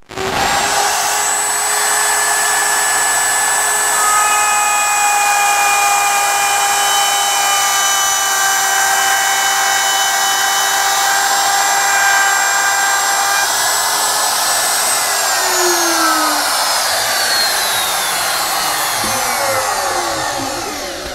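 Handheld router running at full speed as it is pushed along the jig, cutting a flute into a turned wooden pedestal, with a steady high whine over the noise of the cut. About three-quarters of the way through it is switched off, and the whine falls in pitch as the motor spins down.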